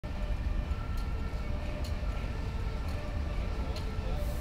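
A train running across a steel railway bridge: a steady low rumble with a faint steady whine and a sharp click about once a second.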